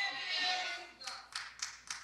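Several scattered, sharp hand claps in the second half, sparse and irregular rather than steady applause.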